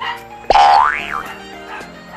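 A comedic 'boing'-style sound effect that sweeps sharply up in pitch about half a second in and drops back, over steady background music.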